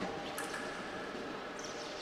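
Fencing hall ambience during a sabre exchange: a steady low background with a faint sharp click about half a second in.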